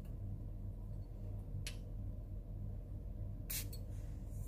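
Perfume atomizer spraying in short hisses, a brief one near the middle and a stronger one near the end, over a steady low hum.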